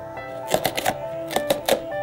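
Background music with a simple melody, over a run of sharp clicks and crackles from a cardboard toy box being opened by hand, starting about half a second in and lasting until near the end.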